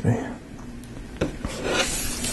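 Paper-and-plastic rustling as a LEGO sticker sheet is picked up and handled off-camera: a short click about a second in, then a rustle that grows louder toward the end.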